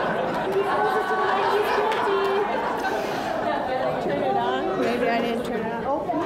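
Audience chatter: many people talking at once in a large hall, no single voice standing out.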